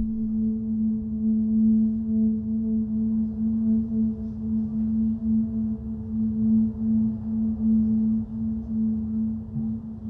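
Ambient drone from a film's sound design: one steady, held tone like a singing bowl, with a rumbling low undertone that swells and ebbs.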